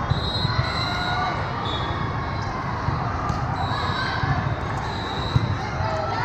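Volleyball hall ambience echoing in a large hall: irregular thumps of balls being hit and bouncing, a few short high squeaks typical of sneakers on the court floor, and distant voices.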